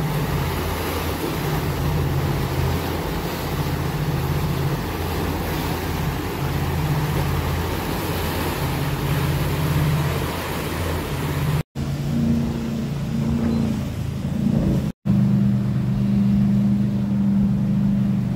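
Motorboat engine running steadily at cruising speed over the rush of churning wake water and wind. The sound drops out briefly twice, about two-thirds of the way through, and after that the engine's hum is higher-pitched.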